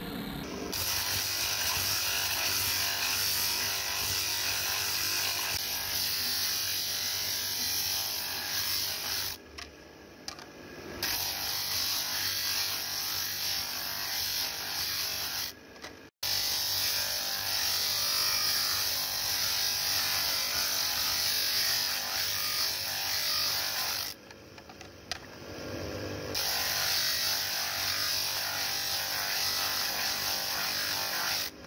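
Small electric bench motor with a spinning sanding disc grinding the rim of a plastic dinner plate, a steady high, hissing grind over the motor's hum. It dips twice for a second or two as one plate is taken away and the next is pressed on.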